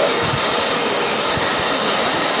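Handheld hair dryer running steadily at close range, a constant rush of blown air.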